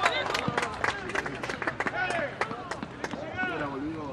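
Young footballers shouting and cheering a goal on an outdoor pitch: drawn-out yells that rise and fall in pitch, a few times, over scattered sharp hand claps.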